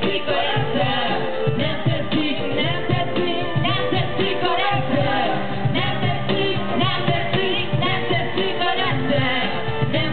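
A live band with singers performs a song through a large outdoor PA system, picked up from within the crowd. The singing and accompaniment run on steadily between sung verses.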